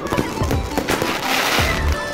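Fireworks going off: several sharp bangs, then a longer noisy burst of hiss and crackle in the second half, with music playing underneath.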